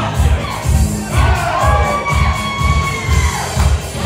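Loud dance music with a steady thumping beat, about two beats a second, over the chatter and shouts of a dancing crowd. A long held high note sounds from about a second in until near the end.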